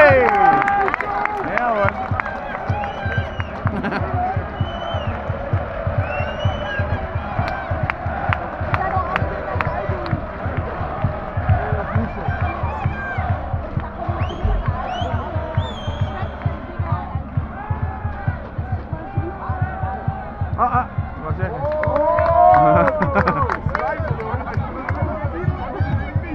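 Crowd of football supporters singing and chanting in the stands, many voices together, with a louder voice close by near the end.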